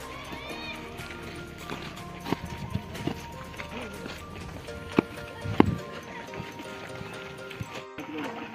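Background music with sustained notes, over which an athlete's feet land in single-leg hops on a dirt track, a handful of short thuds, the strongest about five seconds in.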